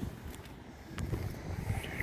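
Low wind rumble buffeting the microphone outdoors, with a faint click about a second in.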